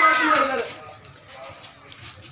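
A voice calling out in a long, drawn-out cry that falls in pitch and stops about half a second in, followed by quieter lane sound with a few faint knocks.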